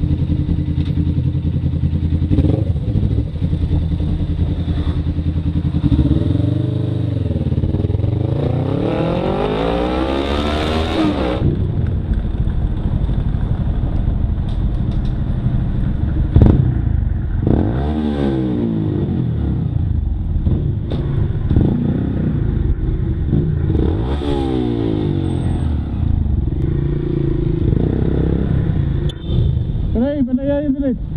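Motorcycle engine running under way, revving up and changing gear several times, with a rising whine that climbs and cuts off around a third of the way in. A single sharp knock about halfway through.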